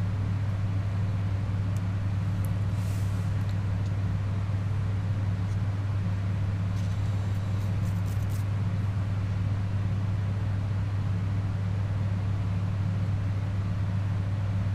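A steady low background hum with no change in pitch or level, with a few faint light clicks over it.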